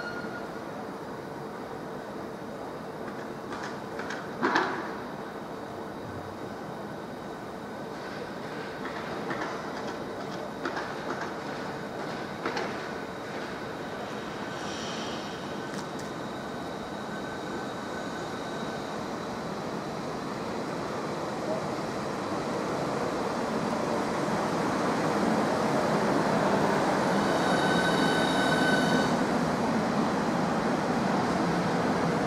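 A Southeastern Class 395 Javelin electric train approaches and runs past the platform, its rolling noise building steadily through the second half and loudest near the end, with a high whine as it passes. There is a single sharp knock about four seconds in.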